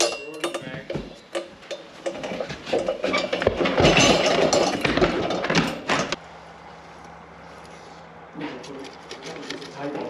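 Metal clinking and knocking, with voices mixed in, for about six seconds. It stops suddenly and gives way to a quieter, steady low hum.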